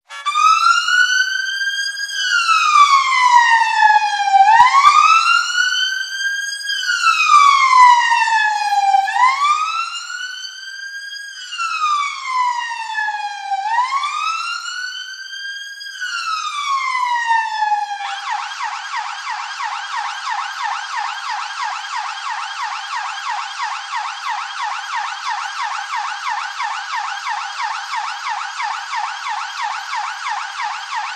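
Police siren wailing, rising and falling in slow sweeps of a few seconds each. About eighteen seconds in it switches abruptly to a fast yelp.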